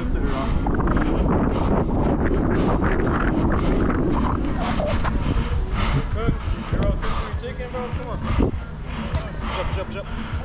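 Wind rumbling on a body-worn camera's microphone during a small-sided soccer game, with players' shouts and, in the second half, a few sharp knocks of the ball being kicked on artificial turf.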